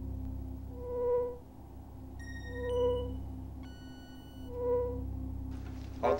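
Sci-fi spaceship bridge sound effects: a soft sonar-like tone that swells and fades about every two seconds over a steady low hum, with two short runs of electronic computer bleeps near the middle.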